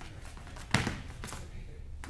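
A sharp thud about three-quarters of a second in, then a softer knock about half a second later: wrestlers' bodies hitting the mat as a double-leg takedown is finished.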